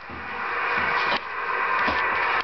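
Static hiss from a CB radio's speaker, swelling over the first second or so.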